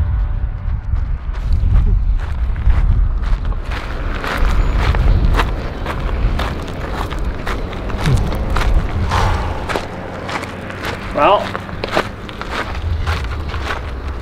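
Running footsteps on pavement at a steady stride, over a low rumble. A brief vocal sound comes about eleven seconds in.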